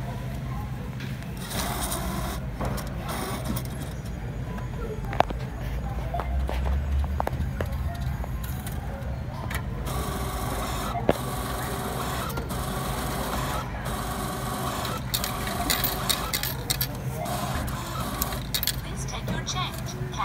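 Self-checkout store ambience: a steady low hum with background voices and handling noise. Two sharp clicks stand out, about five and eleven seconds in.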